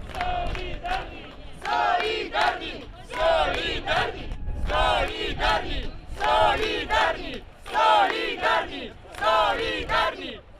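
Protest crowd chanting a slogan in unison. The shouted phrases repeat about every second and a half.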